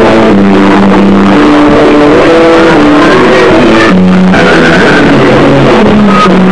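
Loud live noise-rock band, the recording overloaded and dominated by the bass, with held, distorted notes shifting in pitch over a dense din of other instruments.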